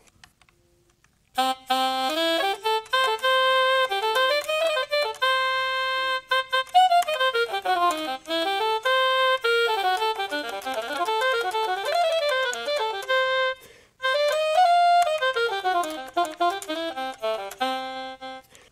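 Yamaha YDS-150 digital saxophone played on its default power-on saxophone voice, an electronic sax tone. Quick runs of notes rise and fall, starting about a second in, with a brief break about three quarters of the way through.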